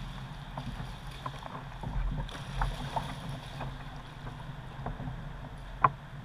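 River water flowing and lapping against a kayak's hull, with scattered small knocks and clicks. One sharp click comes just before the end.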